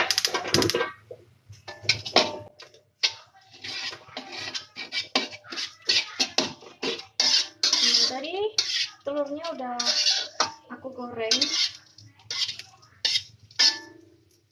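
Metal cooking utensils and pans clattering as they are handled: a run of sharp clinks and knocks, irregular and spread through the whole stretch.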